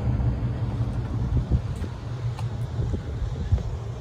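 Outdoor street ambience: a steady low rumble of wind on the microphone, with traffic noise.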